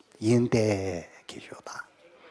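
A man's voice speaking briefly, at a low level, then a few faint clicks.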